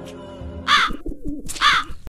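Two loud crow caws about a second apart, over soft background music.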